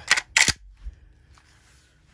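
Two sharp knocks a quarter second apart as a Winchester 1897 pump shotgun is picked up off the bench, followed by faint handling noise.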